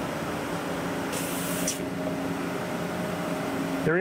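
Willemin-Macodel 408MT CNC machine cutting with cutting oil flooding over the tool: a steady machine hum under a continuous spraying hiss, with a brief sharper hiss about a second in.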